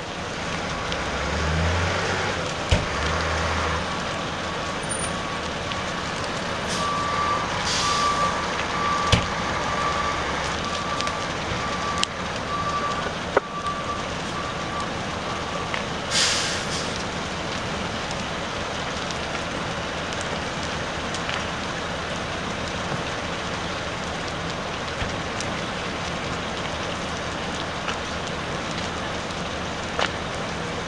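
Fire engine at a working house fire: a steady wash of engine and fire noise, with a low truck rumble in the first few seconds. A repeating beep runs from about 6 to 16 seconds in, and short bursts of air hiss come around 8 and 16 seconds in.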